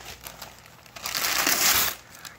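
Gift wrapping paper crinkling under a child's hands, then ripped off the box in one loud tear about a second in that lasts just under a second.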